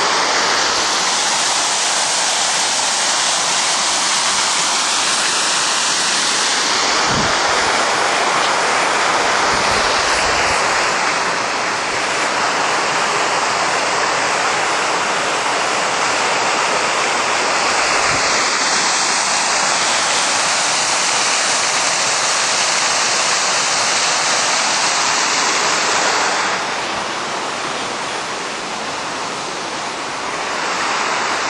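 Water running and splashing in a garden water channel and fountain: a loud, steady rush, with a few dull bumps and a slight fall in loudness near the end.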